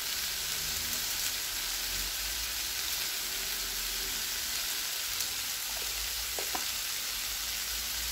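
Sliced onions and bell peppers sizzling steadily in hot oil in a wide pan, with a faint tick or two about six seconds in.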